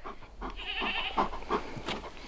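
A goat bleating faintly: one wavering call about a second long.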